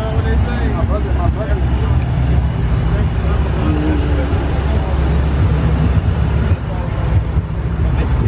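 A car engine idling close by, a steady low rumble, with people talking in the background.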